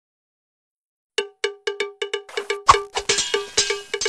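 Intro music that starts a little over a second in with a single bell-like note struck over and over in a quick rhythm. Denser percussion and a deep hit join it about two-thirds of the way through.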